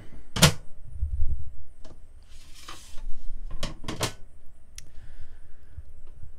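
A few sharp knocks and clicks with a short scraping rustle between them: a removable sink cover being lifted and set down on the countertop.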